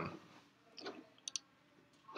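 Two quick, faint clicks about halfway through, from a key pressed on a laptop, with a faint short vocal sound just before.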